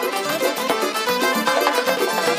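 Lively traditional dance music, loud and amplified: a fast, ornamented melody led by an accordion over a steady quick beat.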